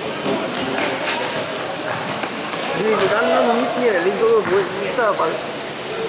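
Basketball game on a gym court: the ball bouncing, high squeaks of sneakers on the floor, and players' voices, with one man calling out loudly from about three to five seconds in.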